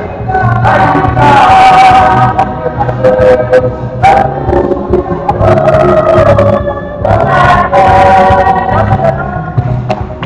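A choir or congregation singing a gospel song together, with a low accompaniment underneath.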